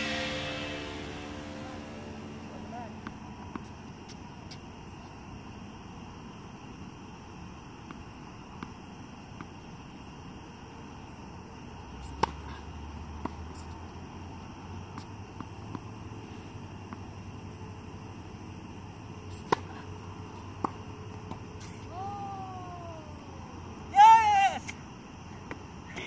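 Tennis ball struck by rackets: a few sharp, isolated pops spread across a long stretch of quiet court ambience with a steady faint high hum, and a voice calling out twice near the end.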